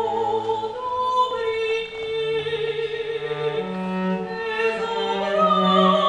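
Soprano voice singing in a classical style, with long held notes, accompanied by a bowed cello whose lower line moves in slow steps.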